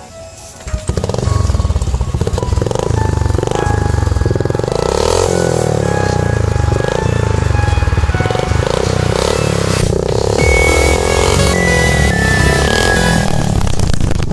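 Motorcycle engine running loudly through a pair of aftermarket exhaust pipes, coming in about a second in, with electronic background music laid over it.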